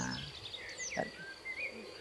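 Insects droning steadily in dense undergrowth, with a few short chirps over it and a brief knock about a second in.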